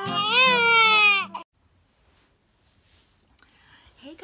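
The end of a channel intro jingle: a loud, high, voice-like note that rises and then falls away, cut off about a second and a half in, followed by near silence.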